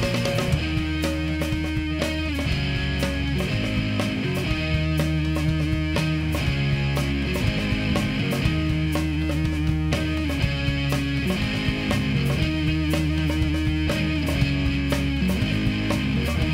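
Rock band playing an instrumental passage with electric guitar, bass guitar and drums; the bass and guitar repeat a riff of sustained notes under a steady drum beat, with no singing.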